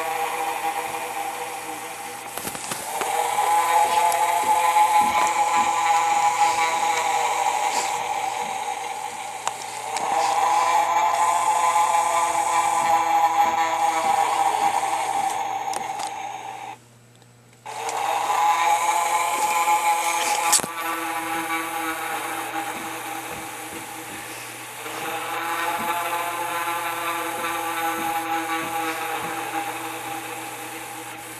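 Animated Gemmy ghost prop running: a steady whirring hum from its small electric motor, its pitch rising and falling in slow cycles of about six seconds as the figure moves. The sound cuts out for under a second a little past halfway.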